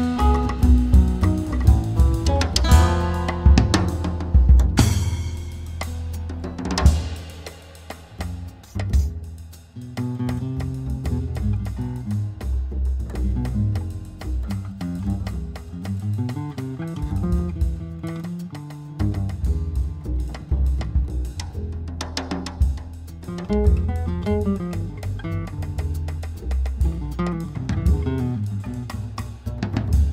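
Instrumental passage of an Italian folk-jazz band song: drum kit and strong low bass under plucked strings. The music thins out and drops in level about seven to ten seconds in, then the full band comes back in.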